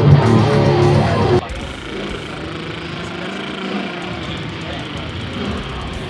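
A band rehearsing loudly on distorted electric guitar and bass, cutting off abruptly about a second and a half in. Then quieter background chatter of people.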